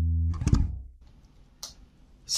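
A held low note on a Boldogh Jazzy 5 active five-string bass through a Prolude KO750 bass amp and 2x12 cabinet, with the active EQ set flat and the pickups in parallel. About a third of a second in, the note is stopped by hand with a short burst of noise. After that it is near quiet, with a faint click.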